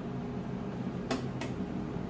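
Two light clicks of small 3D-printed plastic parts being set against a plastic body, about a third of a second apart, over a steady low hum.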